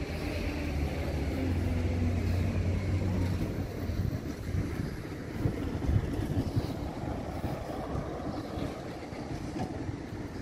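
A vehicle engine running with a steady low hum for the first few seconds, giving way to gusty wind rumble buffeting the microphone.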